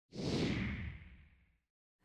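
A whoosh sound effect for a TV channel's logo ident, coming in quickly and fading out over about a second and a half, its hiss falling in pitch as it dies away.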